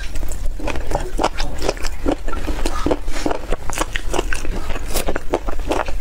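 Close-miked chewing of braised pork crescent bone (cartilage) meat: irregular wet mouth and biting sounds, several a second.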